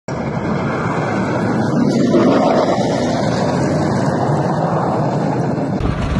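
Heavy vehicle engine running steadily as a tractor drives along a snowy road, heard as a steady rush of noise. Near the end the sound cuts abruptly to a deeper rumble.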